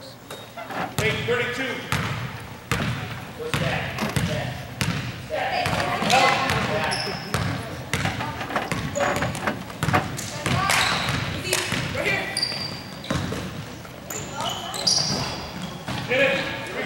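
Basketball game in a gym: a ball bouncing on the hardwood floor and sneakers squeaking in short high chirps, over spectators' voices and shouts echoing in the hall.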